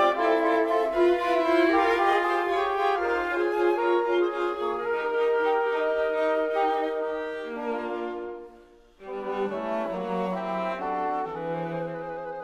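Mixed chamber ensemble playing slow contemporary classical music in long held notes. Near the end the sound thins out and fades almost to nothing, then the ensemble comes back in about a second later.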